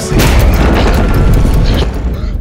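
A sudden loud boom at the start that carries on as a deep rumble: a film-style impact sound effect, with music.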